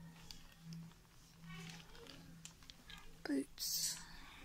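Faint murmured voices over a steady low hum, with a short, louder rustling hiss near the end.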